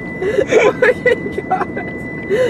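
People laughing and calling out inside a moving car, in short wavering bursts of voice over steady road and engine noise.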